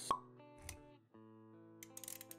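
A sharp pop sound effect just after the start, over soft background music with held notes; the music drops out briefly about a second in and then resumes.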